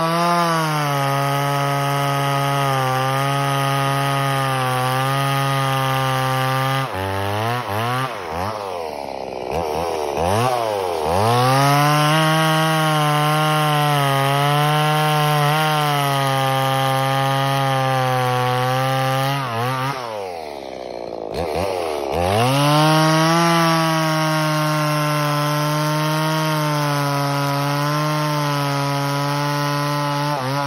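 Stihl MS170 two-stroke chainsaw, running on an aftermarket HIPA carburetor, cutting through a dead fir log at full throttle. The engine pitch drops and revs back up twice, about seven and twenty seconds in. The owner judges that the HIPA carburetor seems to be working pretty good.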